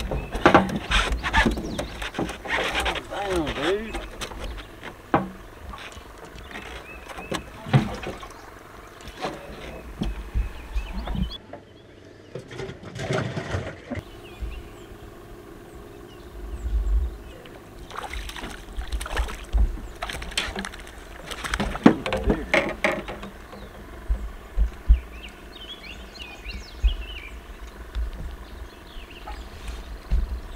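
Low, indistinct voices mixed with scattered knocks and clicks of fishing gear and a cooler being handled in a small boat.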